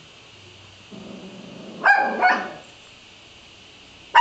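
Schipperke barking: a low rumble about a second in, then two quick, sharp barks close together.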